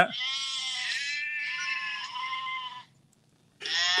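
Recorded sheep bleating, played back from a video: one long wavering bleat lasting nearly three seconds, then a short pause before another sound begins near the end.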